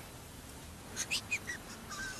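A few short, high chirps, bird-like, stepping down in pitch about halfway in, over a faint background hiss.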